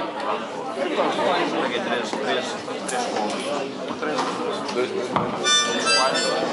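Voices chattering throughout, then near the end a harmonica sounds one short chord as it is brought to the mouth.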